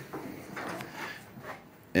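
Top cover of a HomeGrid Stack'd battery being slid and hooked into place: a low scraping rub with a few soft knocks.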